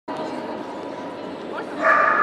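Fox terrier whining, held back at the start of an agility run: a short rising whine about one and a half seconds in, then a loud, high, sustained whine near the end, over the steady hum of a large hall with voices.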